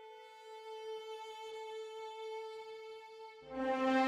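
Background music: one long, slow, held note, steady in pitch. About three and a half seconds in, a louder, lower sustained note comes in and the music swells.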